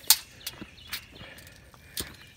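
Footsteps on loose dirt: a few irregular crunching steps, the first the loudest, then fainter ones about every half second.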